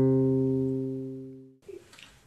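Spruce-top Flight F-230CEQ electro-acoustic guitar, fingerpicked: the last low note of the passage rings on and slowly fades, then cuts off suddenly about one and a half seconds in.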